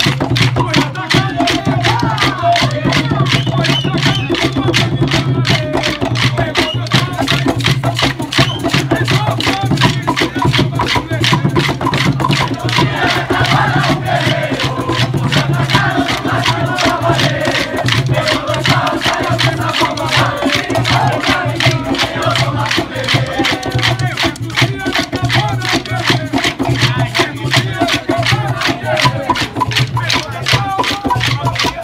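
Maculelê music: atabaque drums beating a steady rhythm, many hardwood sticks clacking together in time, and a group singing along.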